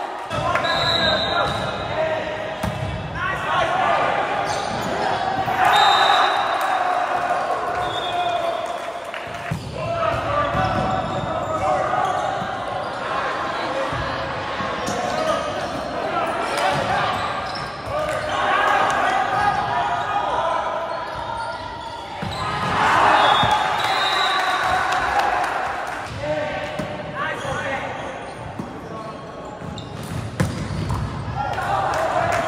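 Indoor volleyball play echoing in a large gymnasium: players' shouts and voices from the court and stands, the ball being hit and striking the hardwood floor, and a few short, high sneaker squeaks.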